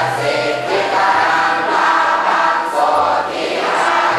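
A large congregation chanting Buddhist verses together in unison from chant sheets, many voices blending into one continuous sound.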